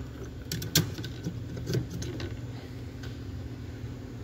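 Sharp plastic clicks and rattles as a factory D1S HID bulb is twisted loose and pulled out of the back of a headlight housing, a few clicks in the first two seconds. A steady low hum runs underneath.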